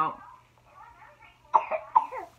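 A person coughing: two short bursts about half a second apart near the end.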